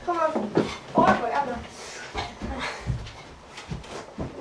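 A boy's voice speaking briefly, twice in the first half, then a few light knocks and thumps from footsteps and handling on an aluminium loft ladder.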